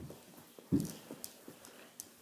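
A dull thump about three-quarters of a second in, with a few light taps around it: knee-hockey play on a carpeted floor, a mini stick, ball and knees knocking on the floor.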